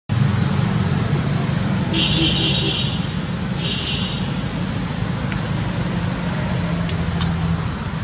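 A motor vehicle engine running steadily nearby, a low even hum throughout.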